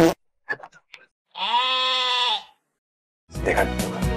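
A single drawn-out, bleat-like call, about a second long, set between short silences.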